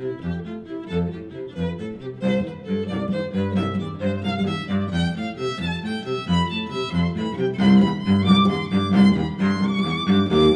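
Violin and cello duo playing a brisk passage of short bowed notes, the cello keeping a quick, even pulse on low notes beneath the violin line. The playing grows louder in the second half.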